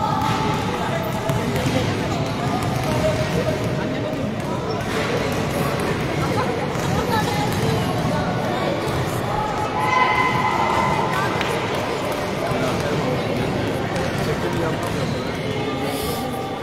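Several basketballs bouncing on a gym court during a warm-up, with players' voices echoing in a large sports hall.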